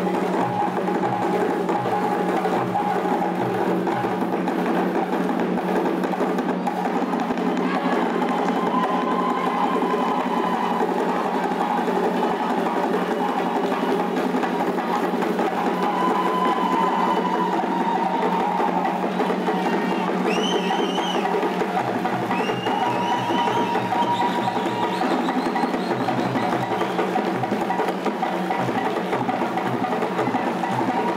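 Live West African drum ensemble of djembés with a barrel-shaped bass drum, playing a fast, driving dance rhythm without a break. A few short, high-pitched rising calls cut through in the second half.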